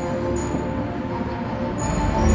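TRON Lightcycle Power Run coaster train rolling along its track with a steady rumble of the wheels, under held synth tones of the ride's soundtrack.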